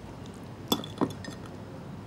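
Two light clinks of tableware on a dining table, about a third of a second apart, the first with a short ring after it.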